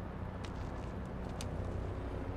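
Steady low engine-like rumble of background street ambience, with two faint clicks about half a second and a second and a half in.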